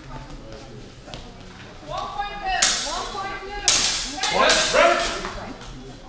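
Two sharp crack-like sword strikes about a second apart in a HEMA sword bout, among short raised shouts.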